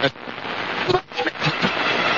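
Indistinct speech fragments over a steady hiss of background noise, right after a music track cuts off.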